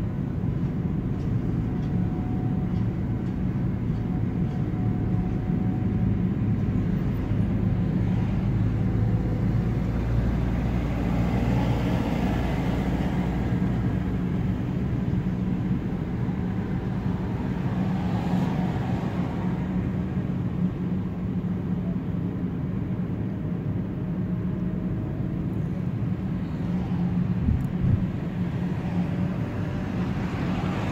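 Car interior noise while driving in town: the engine's steady low hum and tyre and road noise inside the cabin, swelling a couple of times, with a short knock near the end.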